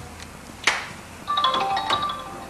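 A sharp click, then, in the second half, a quick run of short electronic beeping notes from a mobile phone, like a ringtone melody.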